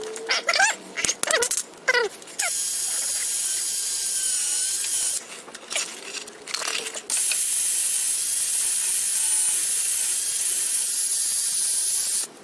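Aerosol spray can hissing in bursts as a suspension part is sprayed clean. One burst runs from about two and a half seconds to five, and another starts about seven seconds in, with short chirping squeaks in the pauses between.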